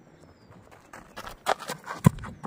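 Running footsteps on dry, hard ground: a cricket bowler's run-up approaching. A quick series of thuds starts about a second in and grows louder.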